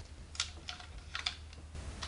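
Light plastic clicks and rattles from a DX Signaizer toy being handled and folded from its signal form into gun mode, about five short clicks spread over two seconds.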